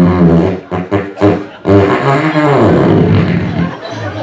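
Loud fake fart noises over a microphone: a low buzzing raspberry in about three long stretches, the last one sliding down in pitch.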